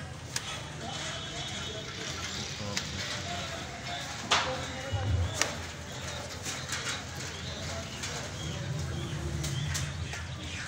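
Street-stall background of indistinct voices and a low hum, with a few sharp clicks of a small knife against a wooden chopping block as chicken meat is cut from the bone.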